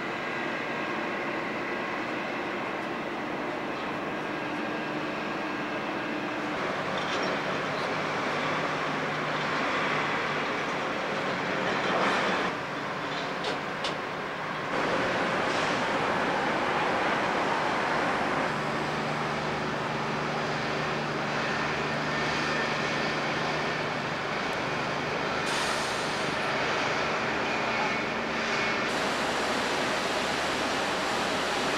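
Steady rumble and hiss aboard a large passenger car ferry under way, with faint steady hum from its engines and ventilation.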